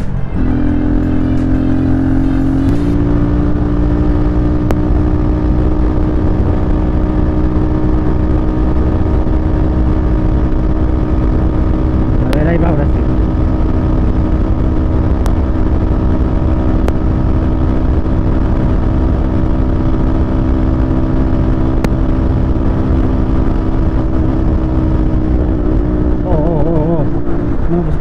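Italika RT250 motorcycle engine held at steady high revs at highway speed, with wind rumble on the helmet microphone. It is under a full-throttle test for surging (jaloneo) from its carburetor: it still surges but recovers quickly, which the rider puts down to carburetion, the air jet needing to be opened a little.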